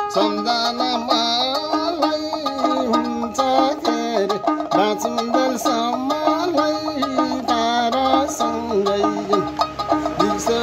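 Nepali sarangi, a carved wooden bowed folk fiddle, playing a quick instrumental melody of short, sliding notes.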